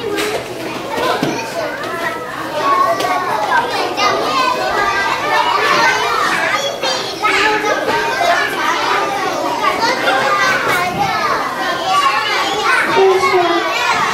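Many young children chattering and calling out at once, a din of overlapping high voices in a large room.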